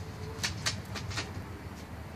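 Fox squirrel gnawing the fabric edge of a pop-up canopy: four or five sharp clicks in the first second or so, over a steady low hum.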